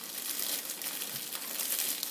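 A clear plastic gift bag crinkles continuously as it is pulled up over a gift basket and gathered in by hand.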